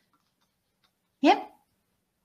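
Near silence, then one short spoken word with a rising, questioning pitch about a second in.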